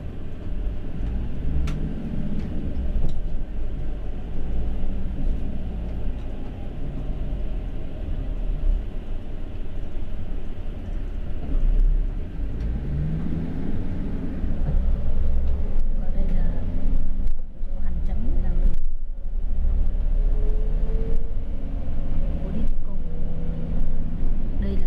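City bus heard from inside the passenger cabin: a heavy, steady low rumble, with the engine rising and falling in pitch twice as the bus pulls away from the stop and gathers speed, and a rising whine in the last few seconds.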